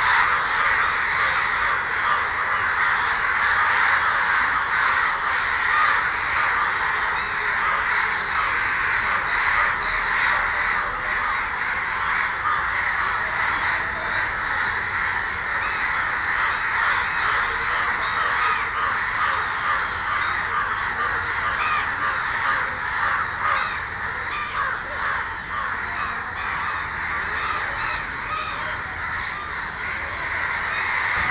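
A large flock of crows cawing continuously, many calls overlapping into a dense, steady din.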